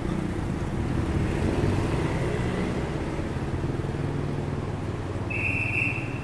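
Street traffic: cars and motorcycles passing with a steady engine hum, and a short high-pitched beep about five seconds in.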